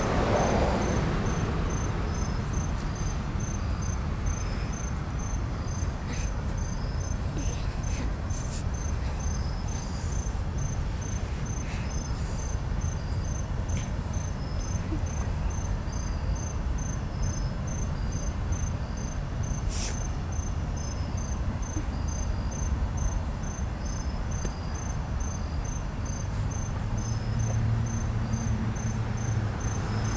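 Crickets chirping in a steady, even pulse over the low rumble of a CSX freight train's cars rolling past. A low steady hum comes in near the end.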